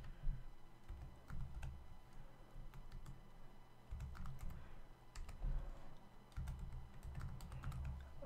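Typing on a computer keyboard: scattered, irregular keystrokes, with a low rumble underneath that comes and goes.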